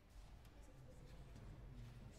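Near silence: faint room tone with a low, steady hum.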